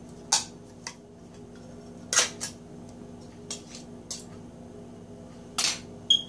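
A handful of short metallic clicks and clinks as a can of condensed cream of celery soup is opened and handled over a stainless steel mixing bowl. The loudest come about two seconds in and near the end, over a steady low hum.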